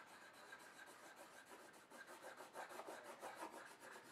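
Coloured pencil shading on paper: faint, rapid back-and-forth strokes of the lead rubbing across the sheet, growing a little louder and denser about halfway through.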